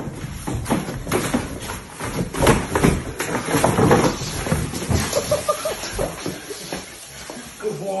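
An American Bully growling and scuffling as it bites and tugs a bite pillow on a wooden floor, with a dense run of knocks and thumps throughout.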